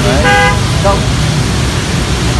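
A short, steady horn toot, like a motorbike or car horn, about a quarter second in, over a steady low rumble of background noise.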